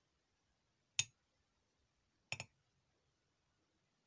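Two light knocks of glassware in a kitchen: one sharp click about a second in, then a quick double knock just over a second later.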